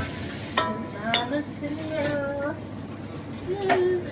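A child's voice making several short, drawn-out gliding calls without words, with a few sharp clinks of kitchen dishes or utensils.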